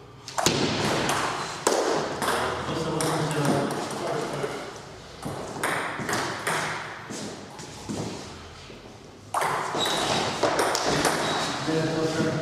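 Table-tennis ball ticking and clicking against the table and bats, mixed with men's loud voices.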